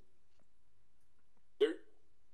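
Speech only: a quiet pause, then a man's voice says one short word near the end.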